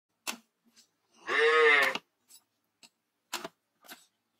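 A farm animal calls once, a single cry of most of a second that rises and falls in pitch; it is the loudest sound. Before and after it come a few short, sharp knocks: a curved machete chopping into the husk of a green coconut.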